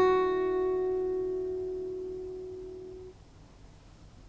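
Acoustic guitar's last strummed chord, left to ring and die away over about three seconds.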